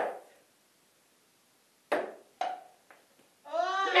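A ping-pong ball bouncing: three light knocks about half a second apart, starting about two seconds in, the last much fainter.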